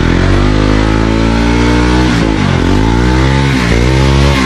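Motorcycle engine running at high revs under load as the bike is ridden along a rutted dirt trail. Its pitch drops sharply and climbs back about two seconds in, and dips briefly again near the end.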